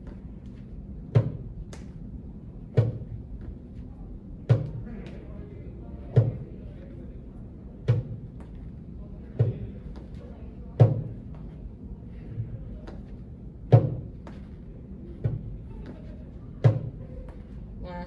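Sneakered feet weighted with ankle weights tapping onto a wooden practice step one after the other, a short dull thud about every one and a half seconds, in an even rhythm.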